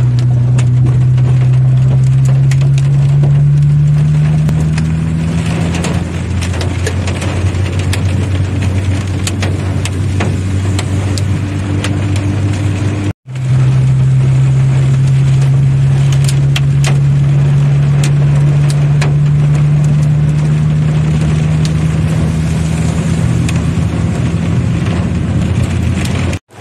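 Rain and hailstones hitting a car's roof and windshield as many sharp separate ticks, heard from inside the cabin over the car's engine hum, which rises slowly in pitch. The sound cuts out for an instant about halfway through.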